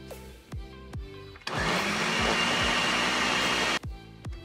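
Ninja countertop blender running for about two seconds, its motor spinning up and then cutting off suddenly, as it blends a protein shake of powder, fruit and almond milk. Music with a heavy bass beat plays before and after.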